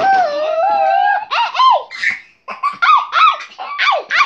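A child's high-pitched squealing and laughing: one long held squeal, then quick rising-and-falling yelps and a run of short, high laughing notes.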